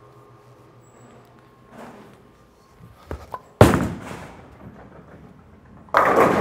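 Radical Hitter Pearl bowling ball landing on the lane with a sharp thud a little past halfway, then rolling with a fading rumble. The pins crash just at the end.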